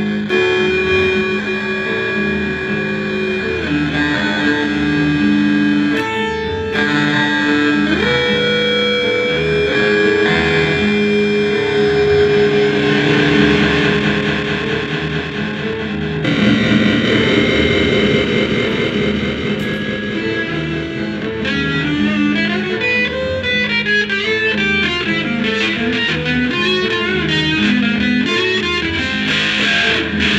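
Electric guitar played through a board of effects pedals as a layered, sustained drone whose held notes step in pitch. The texture shifts about halfway through, and in the last third quicker picked notes come in over it.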